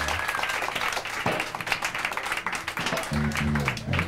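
A small audience clapping and cheering as a live rock band's held final chord cuts off. Near the end a few low notes from the bass or guitar sound again.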